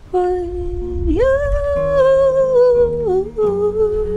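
A woman humming a slow wordless melody over soft acoustic guitar notes; the hummed note steps up about a second in, holds, and drops back just after three seconds.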